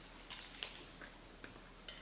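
Faint eating sounds of two people biting into and chewing rolled burritos: a handful of soft clicks and smacks spread over the two seconds.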